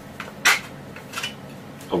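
Three sharp metallic clacks, the second one about half a second in the loudest, from the loose stamped-metal top cover of a King Arms AK-74M airsoft electric gun knocking against the receiver as it is handled just after removal.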